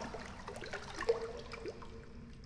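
Cave water ambience: many small water drips and light splashes plinking, the clearest about a second in, thinning out near the end.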